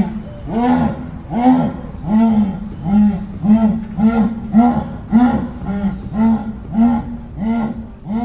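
Jaguar giving its sawing call (esturro): a long series of deep, rasping grunts, evenly spaced at about two a second.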